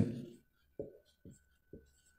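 Marker pen writing on a whiteboard: three short, faint strokes.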